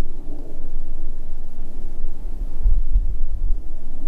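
Wind buffeting the camera's microphone outdoors: a low rumble that swells about two and a half seconds in.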